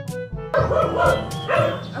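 Dogs barking, a run of short barks starting about half a second in, over background music.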